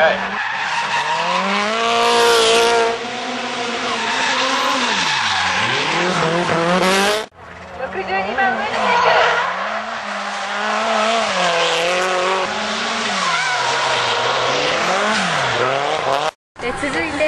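Nissan Silvia drift cars sliding through a corner: the engine note rises and falls as the throttle is worked, with tyres squealing through the slide. About seven seconds in the sound breaks off for a moment and a second car's run begins.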